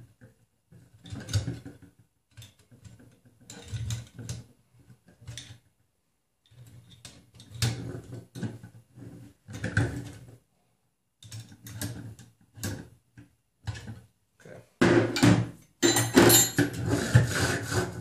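Wrenches tightening the steel nuts on a Prusa i3 Y-axis frame's threaded rods: a socket ratchet wrench clicking and metal tools clinking in short bursts, with a louder stretch of clattering as the metal frame is handled near the end.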